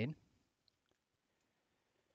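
End of a spoken word, then a couple of faint, short computer-mouse clicks under near-quiet room tone.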